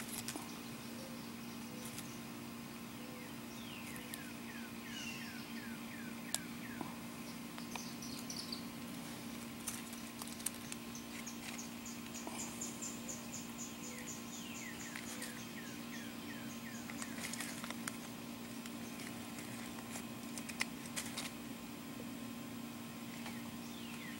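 Faint outdoor ambience: birds singing at a distance in several runs of quick descending notes, over a steady low hum, with a few light clicks.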